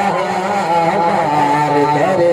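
A man singing a naat into a microphone, drawing out long held notes that slide slowly in pitch.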